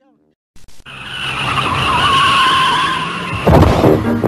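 Car tyres screeching in a long skid that builds for about three seconds, ending in a low thump near the end.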